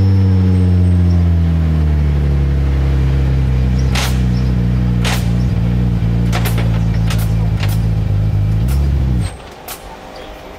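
Radical RXC Turbo 500's 3.5-litre twin-turbo Ford EcoBoost V6 idling just after a start, its idle settling a little lower over the first couple of seconds, then running steadily. It stops abruptly about nine seconds in. Several sharp clicks sound over it in the second half.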